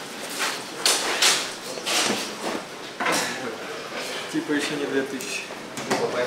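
Voices talking in a dressing room, with several sharp knocks and clatters in the first half.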